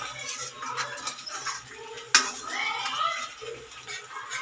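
Steel ladle stirring and scraping gravy in an aluminium kadhai, with metal clinks against the pan and one sharp clink about two seconds in.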